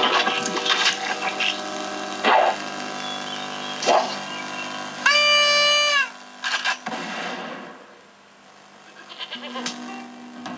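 Cartoon soundtrack playing through the loudspeaker of a Record V-312 black-and-white tube television: music and sound effects with a few sharp hits. A loud held high-pitched cry lasts about a second, about five seconds in. The sound then sinks low for a couple of seconds and returns near the end.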